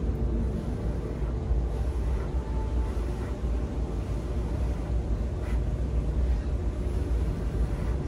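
A person blowing steadily on wet acrylic pouring paint to open up cells, heard as an even, breathy rush over a low rumble.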